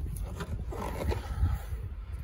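Low wind rumble on the microphone with faint handling noise as a Range Rover Sport's tailgate is lifted open.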